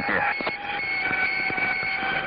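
Jet cockpit noise on the MiG-AT's intercom recording: a steady hiss with several steady high tones laid over it, two of them starting about a second in.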